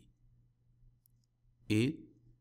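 A pause in spoken lecture narration with a faint steady low hum and one faint click about a second in, then the narrator's voice says a single word.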